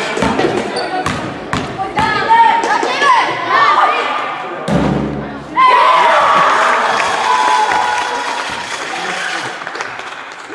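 Basketball bouncing on a hardwood gym floor several times in the first few seconds, among children's shouts and voices echoing in a large hall. About halfway through the shouting swells up loudly, then slowly dies down.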